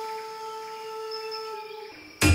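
Background music: a flute holding one long note that slowly fades out.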